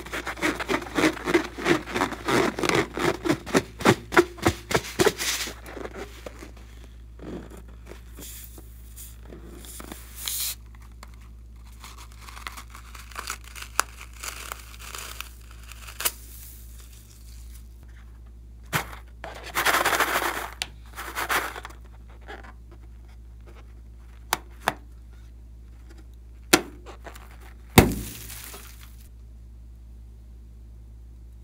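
Hands squeezing a rubber balloon filled with foam beads: a rapid run of sharp crackling squeezes, several a second, for about five seconds. After it come scattered clicks and a short rustling burst as the balloon is cut open and the beads spill out.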